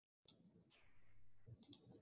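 Dead digital silence, then about a quarter second in a desk microphone cuts in: faint room noise with a few soft clicks.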